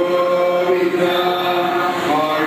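A man chanting a Hindu devotional verse into a microphone in a slow, melodic style, drawing out long steady notes.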